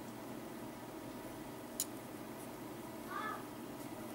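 Steady low background hiss, with one sharp click a little under two seconds in and a short high-pitched call about three seconds in.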